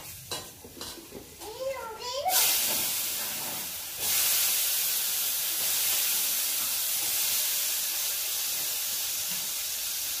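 A few light utensil clinks, then about two seconds in a loud frying sizzle starts suddenly in a hot pan on the gas stove. It steps up louder about two seconds later and goes on as a steady hiss.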